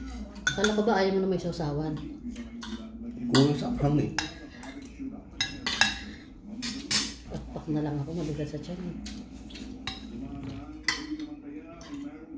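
Metal spoons and forks clinking and scraping against plates and a serving bowl while two people eat. There are many sharp clinks, the loudest a little after three seconds and again near six seconds.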